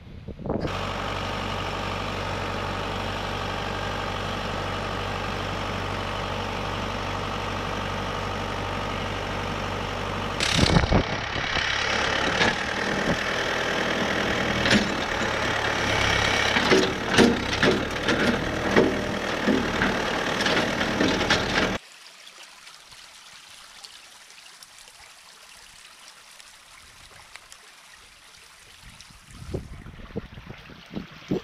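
Backhoe diesel engine running steadily, then working harder and louder with repeated knocks and clanks while digging out a clogged culvert pipe. It cuts off suddenly about two-thirds of the way in, leaving the much quieter sound of muddy water flowing down the drainage ditch.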